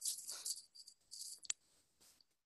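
Faint, intermittent hissy rustling with a single sharp click about one and a half seconds in.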